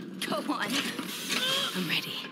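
The soundtrack of an animated series, playing fairly quietly. It is a mix of sound effects and faint voice sounds, with a few short gliding tones and no clear words.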